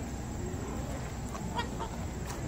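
Domestic geese calling: about three short honks in quick succession around one and a half seconds in, from a flock crowding in to be hand-fed.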